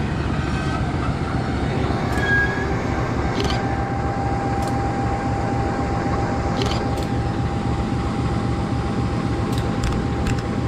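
CC 201 diesel-electric locomotive running as it moves slowly past, with a steady low engine drone and a thin steady whine above it. A few short sharp clicks sound at intervals.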